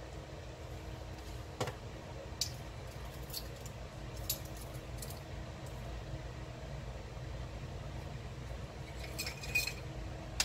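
Faint scattered clicks and taps of metal measuring spoons as seasoning is sprinkled into a slow cooker, ending in a few quick clicks and a light metallic clink near the end. A steady low hum sits underneath.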